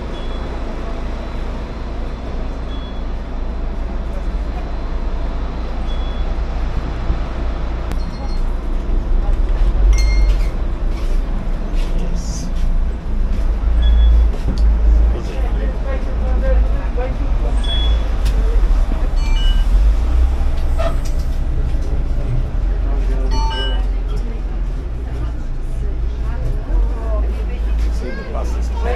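Inside a city bus: a steady low engine rumble that grows louder for a while in the middle, under passengers' chatter. A few short high beeps sound in the first seconds.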